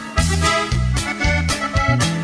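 Norteño band music: accordion melody over a bouncing bass and drum beat of about four notes a second.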